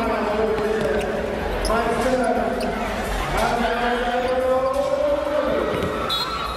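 Basketball bouncing on a hardwood court during live play, a few sharp knocks, over steady voices in a large arena.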